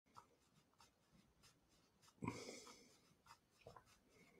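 Near silence: room tone with scattered faint ticks and one brief rustle a little over two seconds in.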